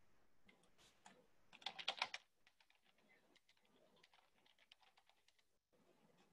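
Typing on a computer keyboard: a quick run of key clicks about two seconds in, then a few scattered lighter clicks.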